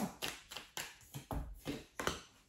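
Tarot cards being shuffled and handled. There is a quick string of sharp card snaps and taps, about seven or eight in two seconds, and one duller knock about two-thirds of the way through.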